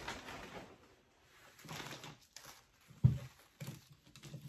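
Soft plastic rustling and light handling noises as an empty plastic bag is thrown away and small supplies are set out on a table, with one sharp knock about three seconds in.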